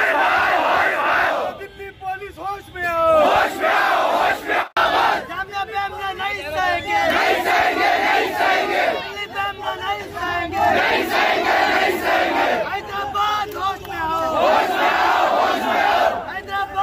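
A crowd of young men shouting protest slogans together in loud, repeated bursts, with one brief dropout about five seconds in.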